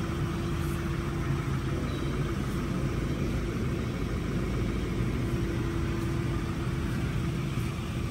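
A motor running steadily: a low, even hum with a faint held tone in the first two seconds and again near the end.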